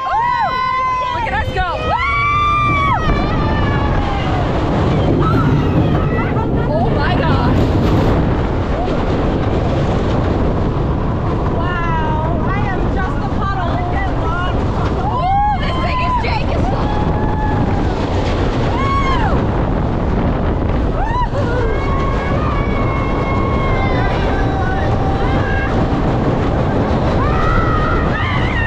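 Roller coaster ride: wind rushes loudly over the microphone as the train runs, with riders screaming and yelling at several points, first at the start and again through the middle and latter part.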